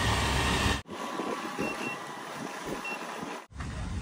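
Garbage truck's engine running close by, cut off abruptly under a second in. Quieter outdoor noise follows, with three short faint high beeps.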